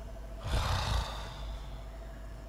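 A man's heavy sigh: one breath out, starting about half a second in and trailing off.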